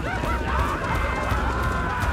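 A group of men howling and calling together in long, overlapping cries that rise and fall, over a steady low rumble.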